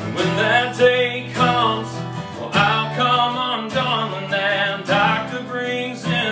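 A man singing with a strummed steel-string acoustic guitar.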